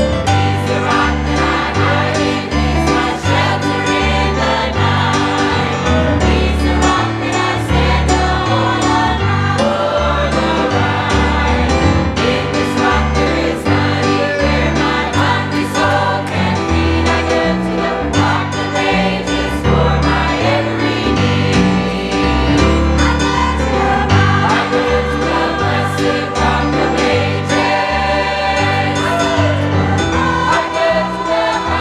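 Church choir singing a gospel song with instrumental accompaniment: a bass line and a steady beat under many voices.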